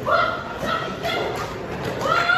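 A person shouting loudly in a large hall: a high, strained yell right at the start, followed by more shouted voice.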